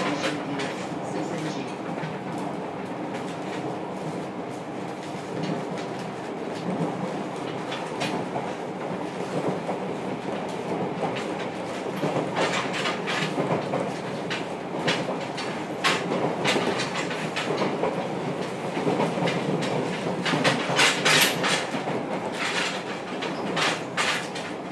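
Running noise heard inside the motor car of a JR Kyushu 303 series electric train: a steady rumble of wheels on rail with a faint steady hum from the drive. Sharp clicks from rail joints come in clusters through the second half, loudest near the end.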